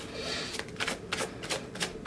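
Tarot cards being shuffled by hand: a brief sliding hiss, then a string of sharp card clicks, about three a second.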